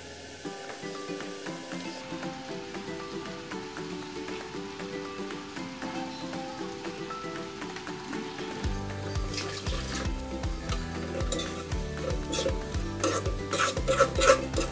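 Chicken and carrots sizzling in sauce in a wok, under background music with a melody, joined by a bass beat from about nine seconds in. Near the end, a few sharp clicks of a spatula stirring against the wok.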